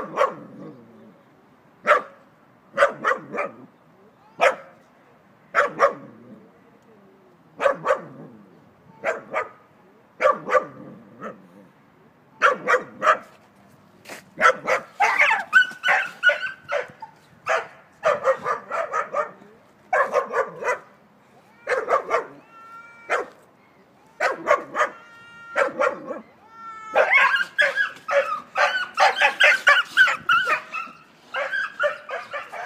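Small dog barking repeatedly in short, sharp barks about a second apart. The barks come faster in the second half, mixed with high-pitched yelps and whines toward the end.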